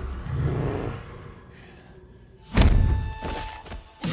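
A cinematic sound effect from the inserted movie clip: after a low rumble and a quieter stretch, one heavy, deep thud about two and a half seconds in, with a short ringing tone hanging after it as it fades.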